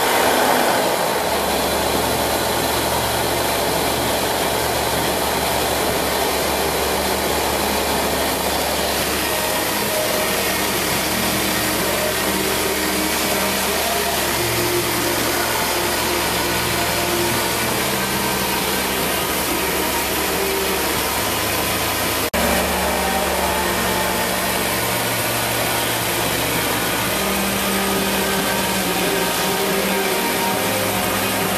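BMW E39 M5's S62 V8 idling steadily, with one short click about two-thirds of the way through.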